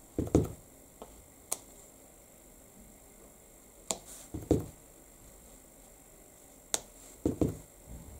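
Soft taps and thumps of an acrylic stamp block being dabbed on an ink pad and pressed onto paper, a few at a time with quiet gaps between. Stamping off onto scrap paper lightens the ink before the stamp goes onto the card.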